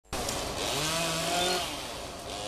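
Chainsaw engine cutting pine branches. It revs up about half a second in, holds at high revs, then eases off shortly before the end.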